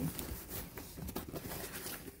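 Faint rustling and light clicking handling noise as the phone and fabric bag are moved about.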